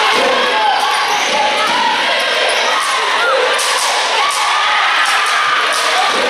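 A basketball being dribbled on a hardwood gym floor under steady crowd chatter and shouting, echoing in the large hall.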